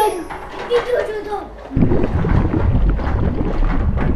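Plastic wheels of a child's ride-on elephant toy rolling over a wooden floor, a low rumble that sets in suddenly about two seconds in.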